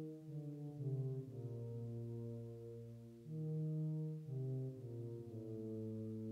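Orchestral music: low brass holding slow, sustained chords that change every second or so.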